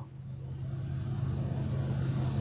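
Steady low hum of a vehicle's running engine and cabin fan, heard from inside the car's cabin.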